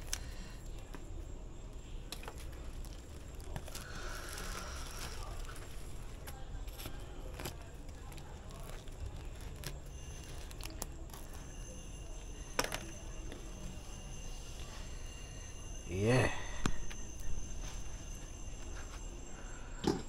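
Kitchen knife scraping and cutting the charred skin off a roasted breadfruit, with scattered small clicks and scrapes and the plastic bag it is held in crinkling. A brief voice sounds about three-quarters of the way through.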